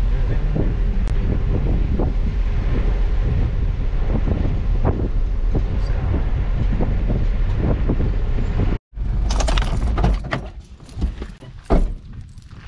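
Ute driving slowly over a gravel campground track, a steady low rumble with small knocks and rattles from the road. It cuts off about nine seconds in, giving way to a few separate clicks and knocks as the vehicle's door is opened.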